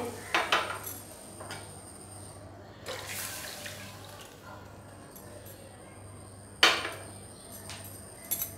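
Milk being poured from a small cup into a kadai already holding milk, a soft liquid pouring and splashing sound with a few light clicks. One sharp knock about two-thirds of the way through is the loudest sound.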